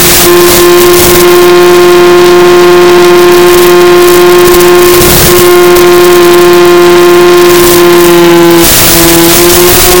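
Electric motor and propeller of a Mini Skywalker RC plane running at steady throttle: a loud, even whine that drops slightly in pitch near the end. Bursts of radio static crackle at the start, about halfway through, and again near the end, as the video link breaks up.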